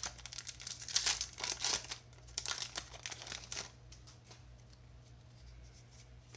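A foil booster-pack wrapper being torn open and crinkled in the hands, a run of crackling rustles over the first three and a half seconds that then dies down.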